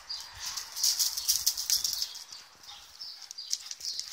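Irregular scuffing and crunching of feet and dogs' paws on loose gravel and a paved garden path: a busy, crackly rustle with no barking.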